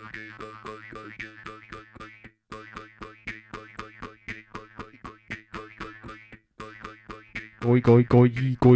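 Live looped mouth-music groove on a Boss RC-505 loop station: a steady twanging jaw-harp drone that sweeps brightly about once a second, over a fast clicking beatbox beat. The loop drops out briefly twice, and near the end a much louder, deep beatboxed bass layer comes in.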